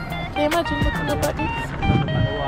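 Background music: a song with a sung vocal line over a steady drum beat.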